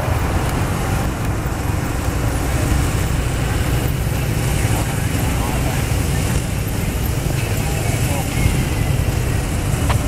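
Police motorcycles and escort vehicles of a procession passing at low speed: a steady, loud low engine and traffic rumble with no sudden events.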